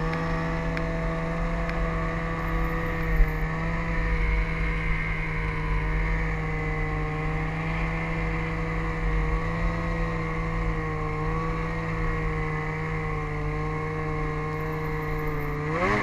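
Snowmobile engine running at a steady cruising speed, one even drone over a low rumble, with a short knock about three seconds in. Right at the end the revs climb sharply.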